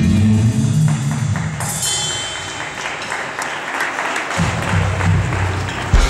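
Live heavy metal band playing the close of a song with electric guitars, bass and drum kit: low bass notes at first, a noisy hissing wash of drums and cymbals through the middle, and low notes returning near the end.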